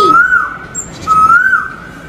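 Two high whistled bird-like calls, a cartoon sound effect. Each is a single clear note that rises and then falls: the first right at the start, the second about a second in.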